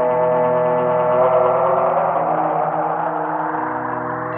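Sound-on-sound loop of layered electric guitar notes playing back through a Strymon Volante tape-style looper. The sustained notes blur into a smeared wash partway through. The low end thins out near the end as the maxed Low Cut strips low frequencies while the loop degrades.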